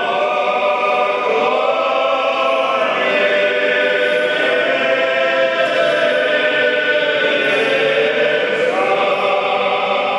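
Church choir singing an Orthodox liturgical chant a cappella during the Divine Liturgy, in held, slowly changing chords.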